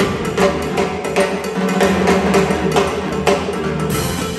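School big band playing a salsa number live: saxophones and brass over Latin percussion, with sharp percussion hits in a steady, repeating rhythm.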